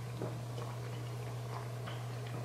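A steady low hum throughout, with a few faint clicks and gulps of someone swallowing a protein shake from a shaker bottle, one soon after the start and two near the end.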